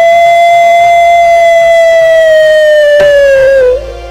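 One loud, long held note lasting about three and a half seconds. It slides up into pitch at the start and sags slightly before it cuts off.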